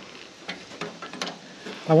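Light metal clicks of a wrench against the nuts and bolts of a sawmill head's steel guide plates as the nuts are being loosened; a few scattered short clicks.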